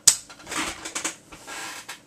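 A sharp click as the M.A.S.K. Billboard Blast toy's lever-operated plastic missile launcher fires a missile, followed by a few fainter plastic clicks and hand rustling.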